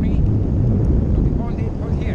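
Wind buffeting the camera's microphone in paraglider flight: a loud, steady low rumble, with a faint voice near the end.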